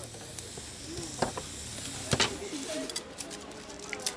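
Crackling and sizzling from a wood cooking fire, with two sharp cracks, about one and two seconds in.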